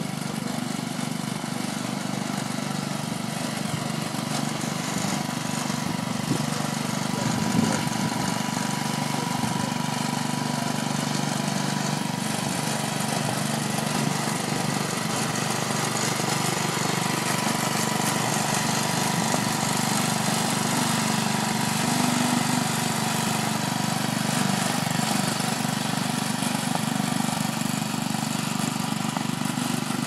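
Small go-kart engine running steadily as the kart drives laps on grass, an even drone with little change in pitch.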